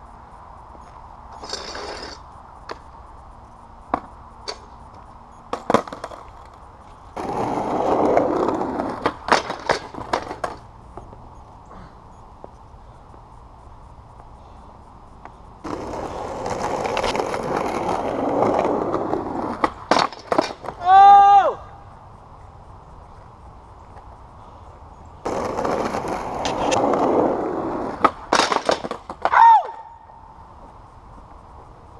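Skateboard wheels rolling over rough, cracked asphalt in three runs of a few seconds each, with sharp clacks of the board hitting the pavement and a metal flat rail. Twice, at the end of a run, a short squeal rises and falls in pitch; the first is the loudest sound.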